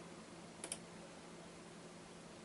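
A quick pair of sharp clicks about two-thirds of a second in, over a faint steady low hum.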